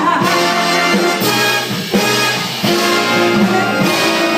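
Big band playing an instrumental passage, the brass section of trumpets and trombones leading with chords held about a second at a time.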